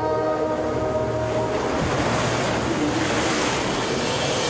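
Held musical tones fade about a second and a half in under a swelling rush of churning water, a sound effect for a whirlpool forming on the river.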